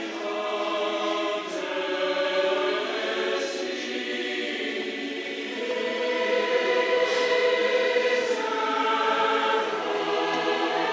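Choir singing slowly, its voices holding long chords that change every few seconds.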